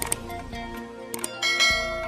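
Short intro music built from bell-like chimes. A click comes just after the start, and a bright ringing chime about one and a half seconds in, typical of a subscribe-button animation's click and notification-bell sound effects.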